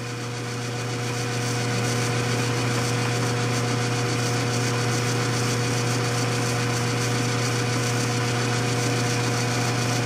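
A 1952 Shopsmith 10ER's constant-speed AC motor and belt-driven factory speed changer running the headstock, coming up to speed over the first couple of seconds and then holding a steady hum with a higher whine above it. The spindle is turning at around 1,300 RPM on the speed changer's low range.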